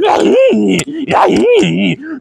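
A man's wordless vocalizing: two drawn-out groaning calls, each rising and then falling in pitch, one early and one past the middle.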